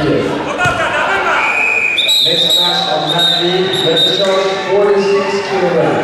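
Referee's whistle: one long, high blast with a wavering start, from about two seconds in to past four seconds, stopping the wrestling bout. Voices call out in a large hall throughout, with a couple of dull thuds on the mat in the first second.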